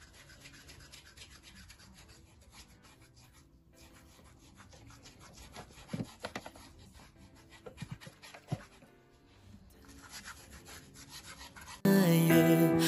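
A handheld foot file rasping over the bare sole and heel of a foot, quiet repeated scrubbing strokes with a few louder strokes around the middle.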